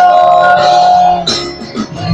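Live worship band playing a Christian song: women's voices hold one long note over the band, which drops away about a second and a quarter in.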